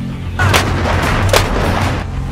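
Self-propelled howitzer firing: a loud blast about half a second in, then a second sharp crack under a second later, with rumbling between and after.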